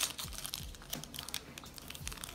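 Foil trading-card pack wrapper crinkling in the fingers as it is torn open, a quick run of small crackles.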